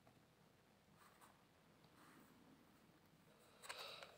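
Mostly near silence, with faint rustles and, near the end, a brief scraping slide of a tarot card being dealt onto a glossy wooden table.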